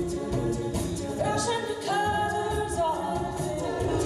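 An a cappella vocal group singing through microphones: a lead voice sliding between notes over held backing harmonies, with a steady beat.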